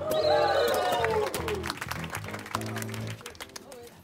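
Crowd cheering, several voices in a falling "woo" for the first couple of seconds, then scattered clapping, over background music with a steady bass line.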